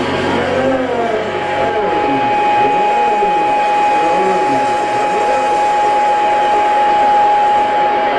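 Electric guitar feedback and amplifier noise at the close of a rock song: a steady high tone comes in about a second in and holds to the end, over a noisy wash with slow rising and falling sweeps.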